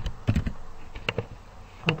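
Typing on a computer keyboard: an irregular run of short key clicks, with one sharper click just before the end.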